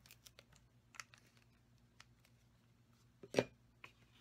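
Small scattered clicks and taps of paper die-cuts and a liquid glue applicator being handled on a work mat, with one louder tap about three and a half seconds in. A faint steady low hum lies underneath.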